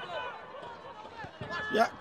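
Football match ambience: faint voices of players and spectators calling out across the pitch, with a few soft knocks. The commentator's voice comes in just at the end.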